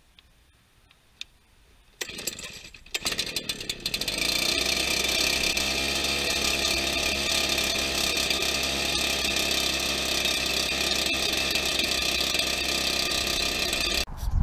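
Echo PB-770 backpack leaf blower's two-stroke engine started: it catches about two seconds in, runs unevenly for a couple of seconds, then settles into a steady run.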